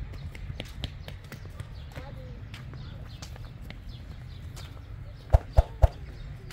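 Footsteps walking across pavement and grass, with a steady low rumble of wind and handling on the microphone. Near the end come three loud thumps about a quarter second apart.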